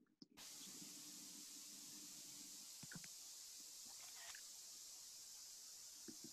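Near silence: a faint steady hiss that switches on just after the start, with a couple of faint ticks partway through.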